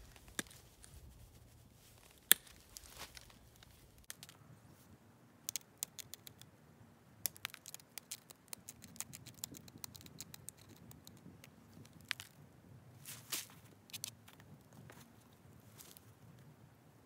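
Antler pressure flaker pushing small flakes off the edge of an agatized coral Clovis point held in a leather pad: a run of sharp little clicks and snaps at irregular intervals, with one louder snap about two seconds in.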